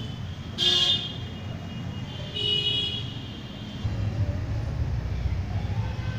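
Road traffic: a short, loud vehicle horn toot about half a second in, a longer horn blast around two and a half seconds in, and a low engine rumble that swells from about four seconds in.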